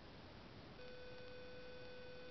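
Faint hiss, then a steady electronic tone that comes on about a second in and holds.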